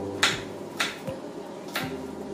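Kitchen knife chopping on a wooden cutting board: three sharp taps, unevenly spaced.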